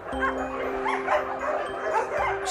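A pack of dogs barking and yipping over background music holding a sustained chord.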